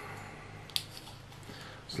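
One short faint click about three-quarters of a second in, from the screw cap coming off a small glass sample bottle, over a low steady room hum.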